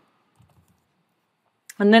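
Computer keyboard typing: a few faint, quick keystrokes about half a second in.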